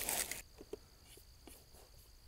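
A brief rustle at the start, then quiet outdoor ambience with a steady high chirring of crickets and a few faint clicks of a laptop trackpad.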